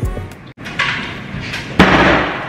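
Background music cutting off, then rustling and a locker door banging shut near the end.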